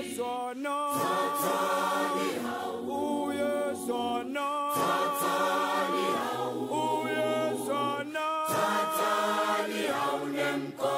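A cappella choir singing as background music, voices holding long notes in harmony with short breaks between phrases.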